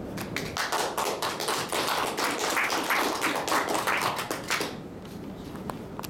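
Small audience applauding, a dense patter of hand claps that fades out about four and a half seconds in.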